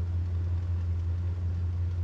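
Car engine idling: a steady low rumble heard from inside the cabin.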